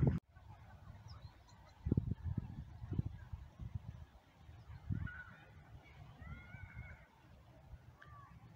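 Low irregular thumps and rumbling from walking on a snowy path with a handheld camera. A few bird calls come in about five seconds in, the last a longer call near the end.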